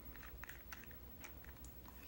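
Scattered faint clicks and taps from handling a glass nail polish bottle and its cap.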